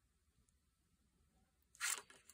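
Near silence, then a brief scratchy rasp near the end as paper is handled during gluing.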